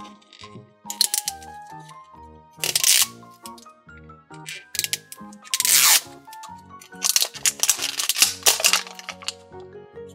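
Background music playing, with several bursts of tearing and crinkling as the wrapping layer of an LOL Surprise Confetti Pop ball is peeled off by hand.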